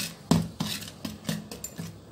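A metal ladle stirring thick dosa batter in a metal pot, knocking against the pot's side about three times a second, each knock leaving a brief ring from the pot, as salt and water are mixed in to thin the batter.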